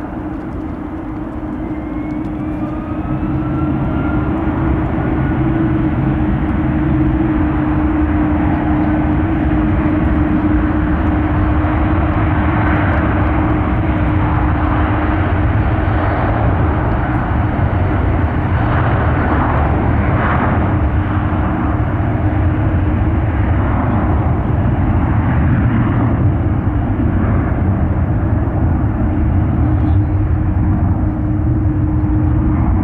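Jet airliner engines spooling up to takeoff power: a faint rising whine and a swelling loudness over the first few seconds, then a steady, loud rumble with a constant hum.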